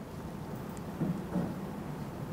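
A pause in speech: steady, faint background hiss from the room and microphone, with two brief soft sounds about a second in.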